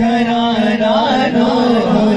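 A man singing a naat, an Urdu devotional poem in praise of the Prophet, into a microphone, holding a long note that wavers and bends about halfway through.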